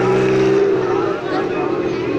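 Vehicle engine running steadily, with a voice over it; the engine note weakens after about a second.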